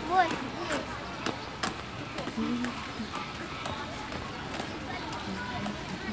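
People talking in the background while walking on a paved path, with a short spoken sound just after the start and scattered sharp taps of footsteps.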